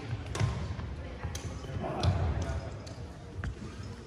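Badminton rally on a gym court: sharp racket strikes on the shuttlecock roughly once a second, with players' footsteps thudding on the hardwood floor, loudest about two seconds in.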